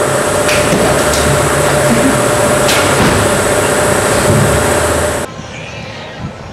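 Loud closing of a rock backing track: a held, noisy chord with several cymbal crashes. It cuts off suddenly a little after five seconds in.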